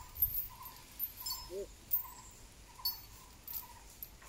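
Elephant's metal chains clinking now and then as the elephant shifts and the mahout climbs down, with a steady note repeated about twice a second behind.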